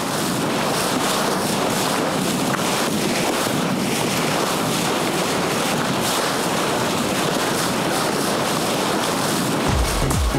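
Steady rush of sea water and wind as a sailboat's bow cuts through the waves. Electronic music with a heavy beat comes in right at the end.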